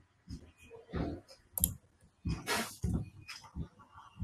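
Computer keyboard keys pressed in an irregular series of clicks, the text cursor being stepped along a line of code with the keys.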